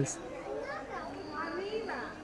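Faint background chatter of visitors, children's voices among them, with a thin, steady high tone in the second half.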